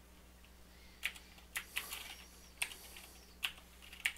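Computer keyboard being typed on: about six separate keystrokes at an irregular pace, the first about a second in.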